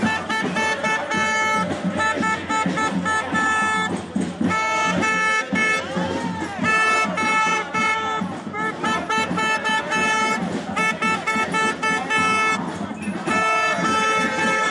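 A horn sounding one steady pitch in many short, repeated blasts, over the voices of a marching crowd.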